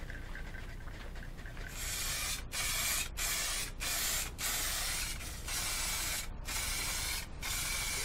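Aerosol can of Hycote clear lacquer spraying: a run of about eight short hissing sprays, separated by brief pauses, starting about two seconds in.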